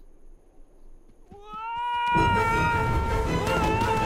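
A faint low rumble, then a long, high-pitched cry that slides up about a second in and is held with small wobbles. Loud music comes in about halfway and carries on under it.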